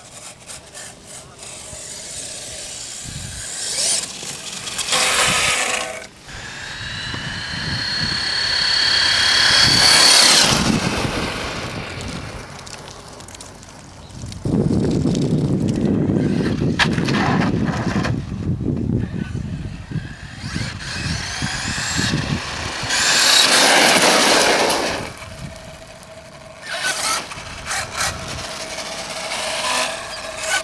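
HPI Savage Flux HP brushless electric RC monster truck driving on gravel in several bursts of throttle, its motor and gears whining up in pitch as it accelerates, with its tyres crunching over the gravel.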